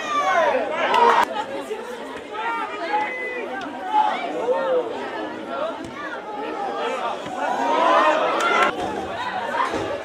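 Several voices at once, players and spectators shouting and calling out across a football pitch, with a crowd's chatter behind.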